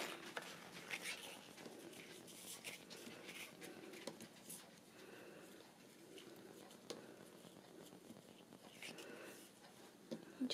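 Faint rustling and soft handling noises as a satin ribbon is wrapped around a paper card, with a few light ticks.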